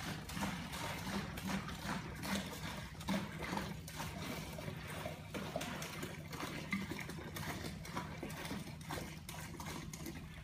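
Evapo-Rust liquid pouring from a plastic jug into a plastic pail, an uneven run of glugs and splashes, over a steady low hum.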